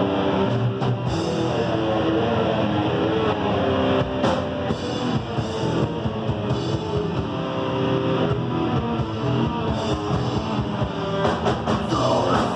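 Crust punk band playing live: distorted electric guitar, bass and drum kit in an instrumental passage, before the vocals come in.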